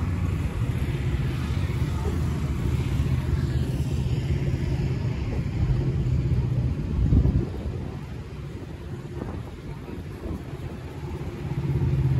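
A steady low engine drone with a louder rush about seven seconds in. It then falls quieter for a few seconds and swells back up near the end.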